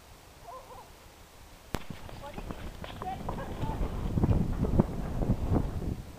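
Ponies' hooves thudding irregularly on turf as they canter, growing loud in the second half, with a few faint voices calling out behind. A sharp click about two seconds in.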